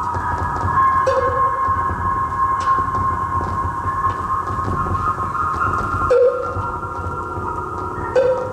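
Doepfer A-100 eurorack modular synthesizer playing a drone: several steady, layered high tones over low noise, with short blips about a second in and about six seconds in. At the second blip the low noise drops away.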